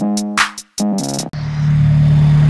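Electronic music with a drum-machine beat, cut off suddenly about a second and a half in by a Toyota Celica's four-cylinder engine idling steadily. The lifters still sound pretty loud even on thicker 10W-30 oil, a noise the owner links to the engine having overheated.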